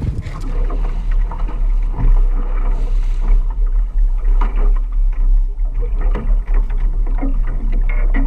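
Heavy, uneven low rumble aboard a boat at sea, with scattered knocks and clatter from crab-pot gear being handled on deck.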